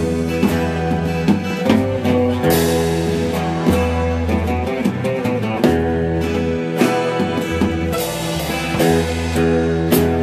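A band playing an instrumental passage of a rock song with no vocals: drum kit keeping time with regular hits under held chords and a moving bass line.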